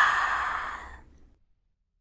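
A breathy, sigh-like sound effect in a logo sting, fading away over about a second into silence.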